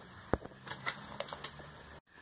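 Faint handling noises: one sharp click about a third of a second in, then a few light ticks and rustles, likely from the phone or plastic packaging being handled. It cuts off abruptly at the end.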